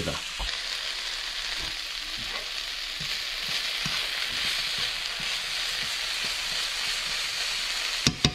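Diced peppers, red onion and jalapeños sizzling steadily in garlic butter in a hot non-stick pan as they are sweated down, with small scraping ticks from a spatula stirring them now and then.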